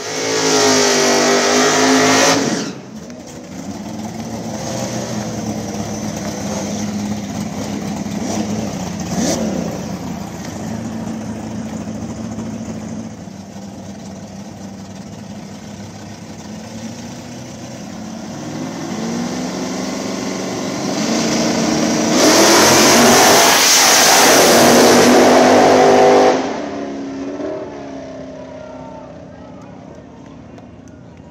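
Drag race car engines at full throttle. A loud burst of engine noise comes right at the start and lasts about two and a half seconds. Engines run quieter through the middle, then a second loud full-throttle burst lasts about four seconds, about three quarters of the way through.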